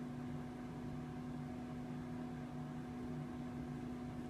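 A steady low hum over a faint background hiss, with no other sound events.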